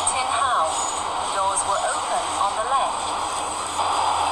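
A recorded automated announcement voice on an MTR Island Line train, speaking over the steady running noise and low hum of the train.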